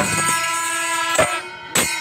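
Kerala pandi melam temple percussion ensemble: kuzhal double-reed pipes hold steady, piercing horn-like tones while chenda drums and cymbals land heavy strokes three times.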